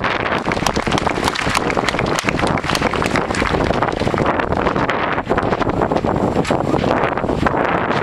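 Heavy wind buffeting an outdoor microphone, covering a marching band that is playing underneath.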